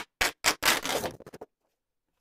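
A sheet of drawing paper from a multimedia pad rustling and crackling as it is handled. A few short crackles are followed by about a second of continuous rustle, which stops abruptly.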